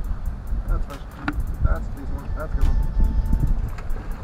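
Wind buffeting the camera microphone in a steady low rumble on open water, with faint muffled talk and small clicks.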